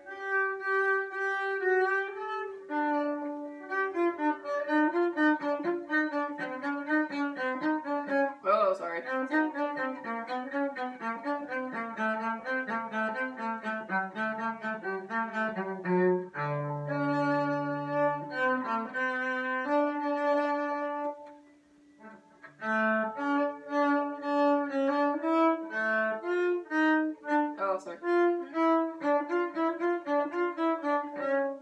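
Solo cello playing quick running note patterns, bowed, with a few longer low notes about two-thirds of the way through and a brief pause shortly after before the passage resumes.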